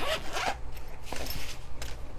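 Zipper on a fabric pencil case being pulled open around the case, a continuous rasping run along the teeth.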